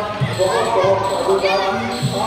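A voice, speaking or chanting, over a loud mix with dull low thumps at irregular intervals and crowd noise behind it.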